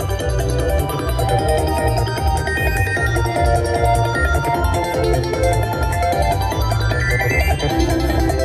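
WMS King and the Sword slot machine playing its Super Big Win celebration music as the win meter counts up, over a steady low beat. A rising tone sweeps upward near the end.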